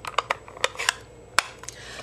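Light clicks and taps of a plastic ink pad case being handled and its snap lid opened, with about seven short clicks, the loudest about one and a half seconds in.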